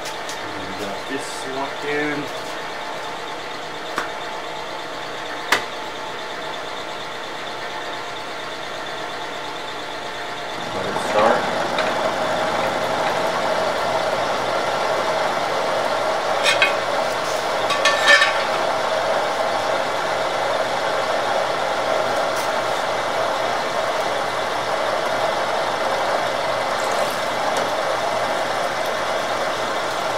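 Vertical milling machine running at 660 RPM off a phase converter, its end mill cutting a long metal bar with coolant flowing. The steady machining hum gets louder about a third of the way in, and a few sharp clicks come through it.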